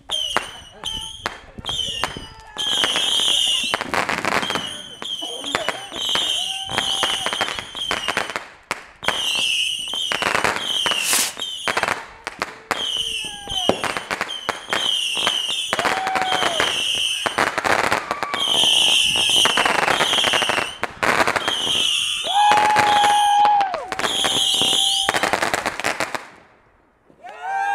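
Aerial fireworks going off in quick succession: a long run of sharp bangs and crackling bursts, one after another, with only brief gaps.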